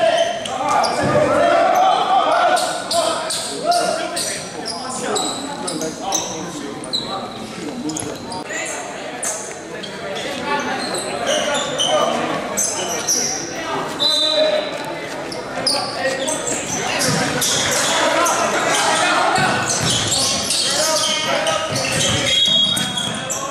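Indistinct voices of players and coaches echoing in a large gymnasium, with a basketball bouncing on the hardwood floor.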